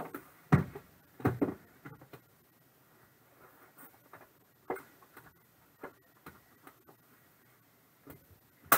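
Handling of a gold metal briefcase-style card box: sharp clicks and knocks of the case and its lid, loudest about half a second in and again around a second and a half, then lighter scattered taps as cards are lifted out of the foam.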